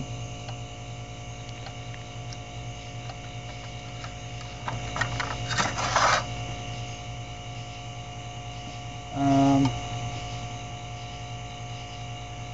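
Steady electrical mains hum with a buzz of even overtones. It is broken by a short rustling noise about five to six seconds in and a brief voiced 'uhm' about nine seconds in.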